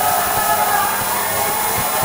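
Loud steady noise on the recording, with irregular low thumps, all but burying faint music and voices from the stage sound system.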